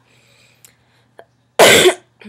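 A woman coughs once, loudly and briefly, near the end. Before it there is near quiet with a couple of faint clicks.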